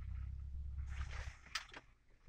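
Low rumble and rustling inside a car's cabin, ending about one and a half seconds in with a single sharp click.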